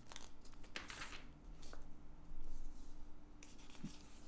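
Glossy catalog pages being turned and brushed by hand: several short, soft paper rustles.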